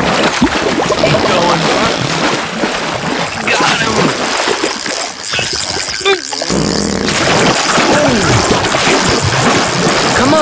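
Music playing with splashing water sound effects, as of a fish being hauled in on a line, and voices without clear words.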